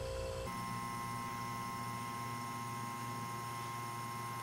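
Steady electrical hum and faint hiss of room tone. The hum's tones shift abruptly about half a second in, then run on evenly.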